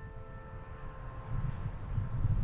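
The last notes of a soft piano chord ring out and fade while a low rumble swells up from about halfway through, with faint high ticks above it.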